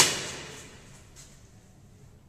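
A single sharp bang at the very start, its echo ringing off the bare walls of a concrete stairwell and dying away over about a second.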